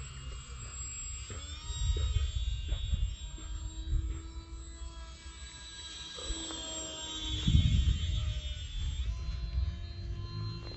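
Small brushless electric motor and three-blade propeller of an RC glider whining in flight as a set of steady tones. The pitch glides up about a second and a half in as the motor speeds up, then steps down near the end. Gusts of wind rumble on the microphone, loudest around two seconds and seven and a half seconds in.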